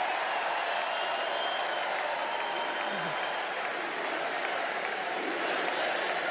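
Large arena crowd applauding, with crowd voices mixed in, at a steady level throughout.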